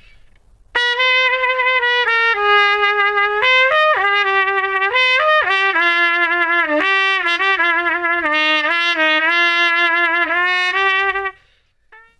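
Trumpet played through a Denis Wick adjustable cup mute with the cup removed, so that it works as a straight mute. It plays a melodic phrase of mostly held notes that starts about a second in and stops shortly before the end.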